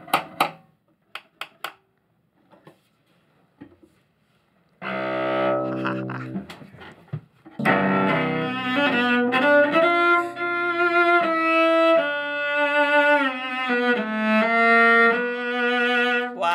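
A few small sharp clicks and taps from work on a cello's bridge, then the cello bowed. A sustained chord comes about five seconds in, and from about eight seconds a melodic passage of held notes with slides between them. The playing tests the sound of the newly adjusted bridge.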